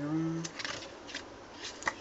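Pages of a small glossy CD photobook being turned by hand: a few brief papery flicks and rustles.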